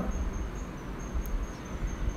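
Background noise in a pause between speech: a low rumble and faint hiss, with a thin, steady high-pitched tone throughout.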